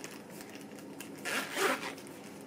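Zip on a small purse bag being pulled shut, one rasping run of the zip lasting about half a second from a little past a second in, after light handling rustle.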